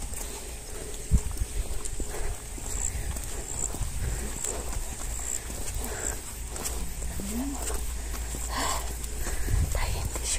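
Footsteps walking on a paved lane, with low wind and handling rumble on a handheld phone microphone.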